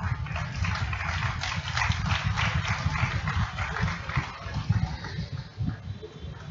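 Audience applauding, dense clapping that thins out toward the end, over a low rumble.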